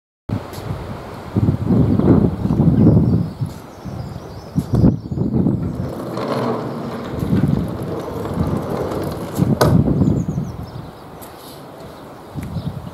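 A large sliding door rolling along its track as it is pulled shut, a low rumble that swells and fades, with a few sharp knocks. Wind on the microphone adds to the rumble.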